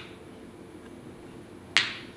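A single sharp click near the end, one of a series of clicks evenly spaced about two seconds apart, over a faint steady room hum.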